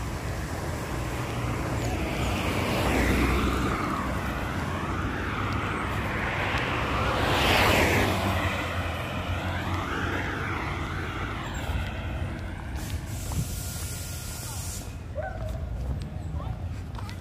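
Cars passing close by on a road, their tyre and engine noise swelling and fading twice: once about three seconds in, and loudest about eight seconds in as a car goes past.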